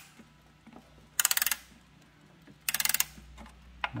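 A Seiko Chime mantel clock being wound with its key: two quick bursts of rapid ratchet clicks, about a second and a half apart, as each turn of the key winds the run-down mainspring.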